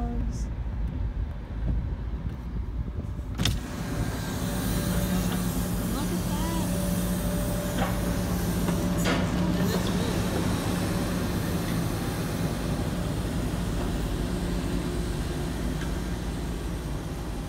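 Heavy diesel machinery of a tree-removal crew running steadily, a knuckleboom log loader and crane truck, heard from inside a car as a low, even hum and rumble. About three and a half seconds in there is a sharp click, after which the outdoor noise comes in brighter and louder, as when the car window is lowered.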